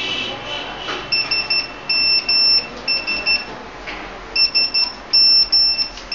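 Electronic alarm beeping: quick groups of three or four short, high-pitched beeps, repeating about once a second, with a break of about a second midway.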